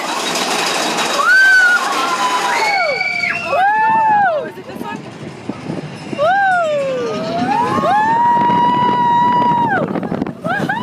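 Roller-coaster riders yelling and screaming in sweeping, rising-and-falling calls, over a rush of ride noise at the start; one long held scream near the end.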